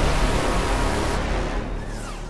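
Cinematic logo-intro sound effect: a rush of noise over a deep rumble, slowly fading away, with the high hiss dropping out about a second in.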